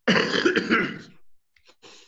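A man coughing: one rough cough lasting about a second, followed by a few faint short sounds near the end.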